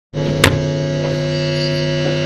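Steady electrical hum from a guitar amplifier, buzzing before the band plays, with one sharp click about half a second in.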